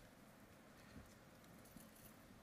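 Near silence: room tone, with two faint footsteps a little under a second apart.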